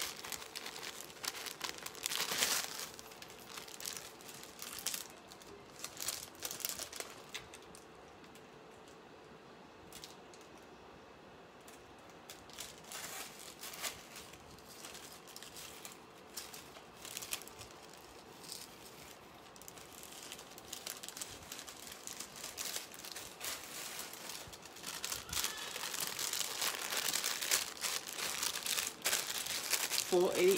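Thin clear plastic packaging crinkling and rustling in irregular bursts as it is handled, sparse for a few seconds in the middle and busier near the end.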